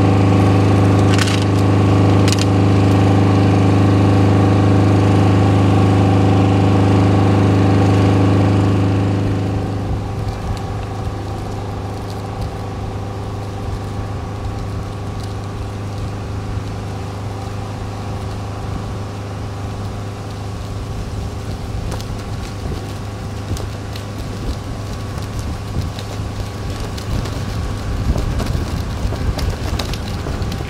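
An engine running steadily at idle, a loud, even hum for the first nine seconds or so. It then gives way to a quieter, rougher background noise in which a faint hum remains.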